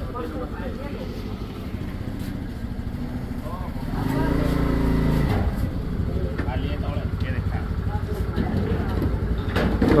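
A vehicle engine running steadily, a low rumble that swells a little about four seconds in, under indistinct voices.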